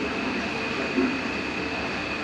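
Steady indoor room noise: a continuous, even hiss and hum with a thin high tone running through it, and faint muffled voices underneath.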